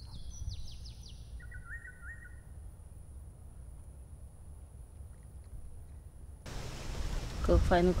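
Birds calling over a low outdoor rumble: a quick run of high descending chirps in the first second or so, then three or four shorter, lower notes. The background changes abruptly, and near the end a man speaks in Thai, louder than the birds.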